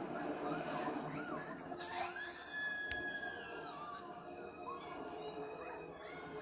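Animated-film soundtrack heard through a TV speaker: cartoon children screaming and shrieking in rising and falling pitches over orchestral music.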